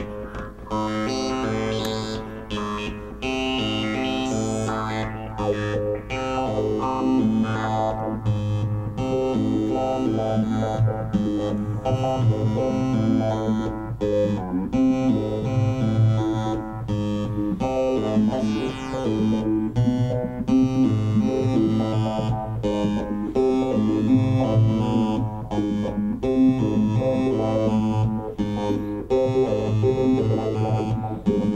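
Homemade 8-step analog sequencer driving an Atari Punk Console-style synth: a looping run of stepped electronic notes whose pitches shift as the knobs are turned, with a gliding sweep about halfway through.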